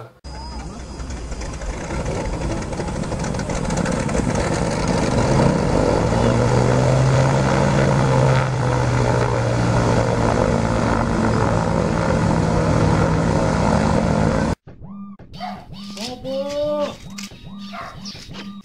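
Engine noise of a small propeller plane: a steady hum that builds over the first few seconds, holds, then cuts off abruptly near the end. A voice follows.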